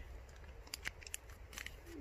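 Faint paper crinkles and a few small clicks from seed packets being handled, over a low steady rumble.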